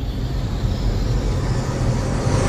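Deep low rumble under a hissing whoosh: the sound design of an animated logo intro.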